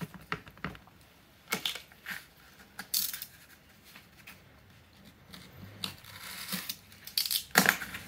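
Hands handling a strip of gold foil heat-wrap tape with its paper backing, and a snap-off utility knife, on a cardboard-covered bench: scattered sharp clicks and crinkling rustles, with a longer stretch of rustling about six seconds in.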